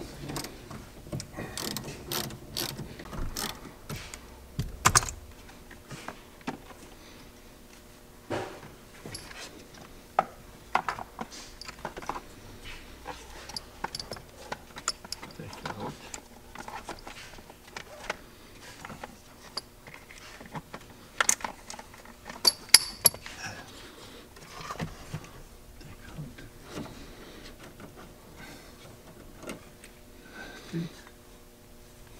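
Hand ratchet clicking in quick runs as a fastener on the car's B-pillar is turned, then scattered clicks and knocks of plastic interior trim and clips being handled.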